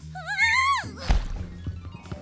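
Cartoon slip-and-fall sound effect: a wobbling cry that rises and then drops steeply, followed about a second in by a heavy thunk, over background music.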